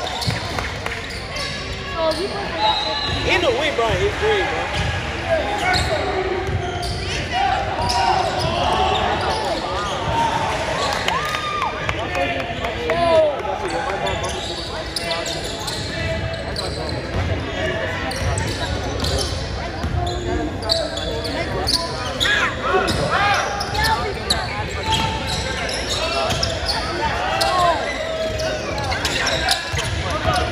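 Basketball bouncing on a hardwood gym floor during a game, with indistinct voices of players and onlookers calling out, echoing in a large gym.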